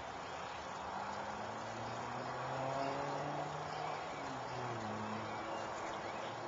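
Distant engine hum, likely a passing motor vehicle, slowly shifting in pitch over a steady outdoor background.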